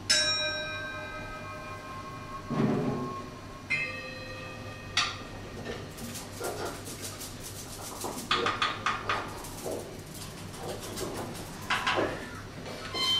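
Small hand-held percussion bells struck one at a time, each ringing out with several clear pitches and a slow decay, in a sparse free-improvised passage. A soft low thump comes between the first two strikes, and a quick run of light clicks and rattles follows in the middle.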